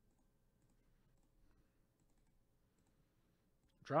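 A few faint, scattered clicks of a computer mouse against a low steady room hum.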